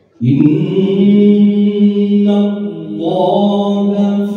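Male Qur'an reciter chanting (tilawah) through a microphone. He starts suddenly with one long, loud held note and ornaments it with melodic turns about halfway through and again near the end.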